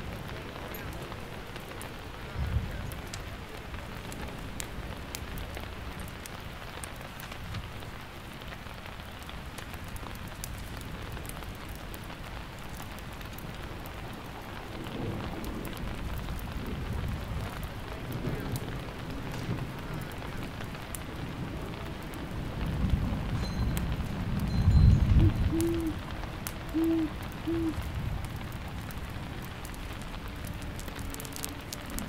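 Steady rain with low thunder rumbling several times; the loudest roll comes about three-quarters of the way through. Three short, low hoots follow just after it.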